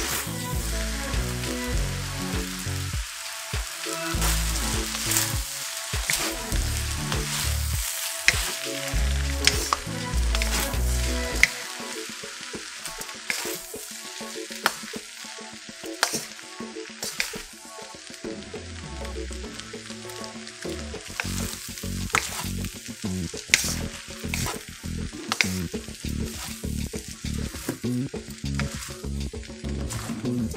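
Noodles and vegetables sizzling as they are stir-fried in a wok on high heat, with frequent sharp clicks and scrapes of a wooden spatula against the wok as the noodles are tossed.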